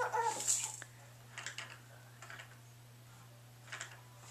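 A toddler's short, high-pitched vocal sound with a bending pitch in the first second, followed by a few soft clicks and knocks from a plastic ride-on push toy being handled.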